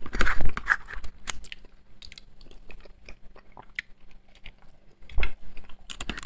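Close-miked chewing and wet mouth noises of a man eating lasagna, with short clicks and scrapes of a metal fork in a disposable food tray.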